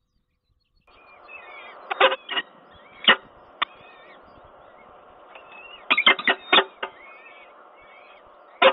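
Silence for about a second, then a steady background hum with faint high chirping. Over it come loud, short, sharp calls, taken here for a peregrine falcon's: a few about two to three and a half seconds in, and a quick cluster of five or so about six seconds in.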